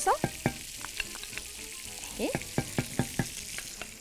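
A wooden spoon stirring raw rice through fried onions in a stone-coated pot, scraping and tapping about four times a second over a steady sizzle of hot oil.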